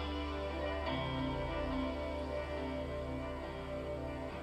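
Live ambient guitar music: sustained, ringing plucked notes over a steady low drone, with a new chord coming in about a second in.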